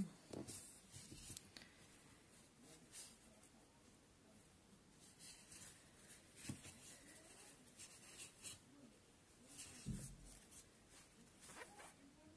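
Faint scratching and rustling of a metal crochet hook drawing yarn through stitches as single crochet is worked, with a soft knock about ten seconds in.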